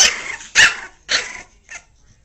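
A dog barking three times in quick succession, about half a second apart, with a fainter fourth bark near the end.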